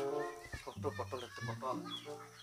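Domestic chickens clucking: a string of short calls.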